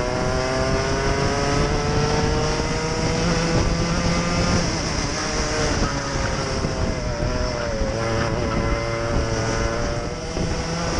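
Racing kart engine heard from the kart itself, revving up in pitch along the straight, dropping back about five seconds in as the driver lifts for a corner, then picking up again.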